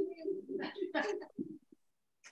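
A person laughing softly, a short run of low chuckles lasting about a second and a half.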